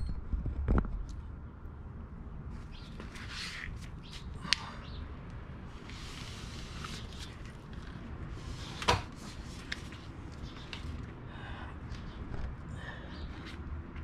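Scattered scuffs and a few sharp knocks as a motorcycle rear wheel and tyre is handled and worked clear of the bike. The clearest knocks come about four and a half and nine seconds in.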